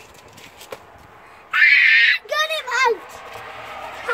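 A child's high-pitched shriek lasting under a second, about halfway through, followed by a few short high vocal cries during snowball play.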